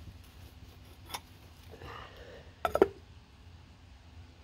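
Stainless steel lid set down onto a clay cooking pot: a quick cluster of clinks a little before three seconds in, after a single faint click about a second in.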